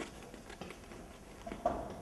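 Faint taps and footsteps on a stage floor as a performer turns, with a louder short scuff about one and a half seconds in.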